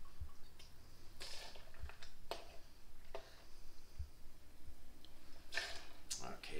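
Bourbon poured from a bottle into a cocktail shaker: a faint, long pour with a few light clicks and soft knocks of glass against the shaker.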